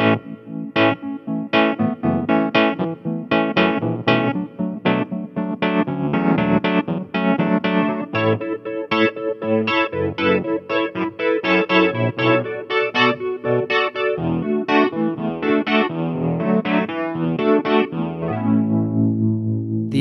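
Kawai MP11 digital stage piano played on its reed electric piano voice: a phrase of struck chords and single notes, ending on a low chord held near the end.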